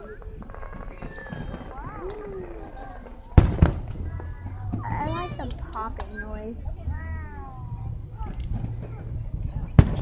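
Aerial fireworks shells bursting: one loud bang about three and a half seconds in with a low rumble lingering after it, and another sharp bang just before the end.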